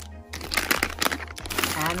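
Plastic packaging of wipe packs crinkling and rustling as they are handled and pushed into a plastic storage bin, in a quick run of short crackles.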